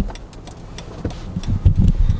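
Mercedes Sprinter van moving slowly, its engine and road rumble heard from inside the cab. A sharp click comes at the very start, and a few heavy low thumps fall in the second half.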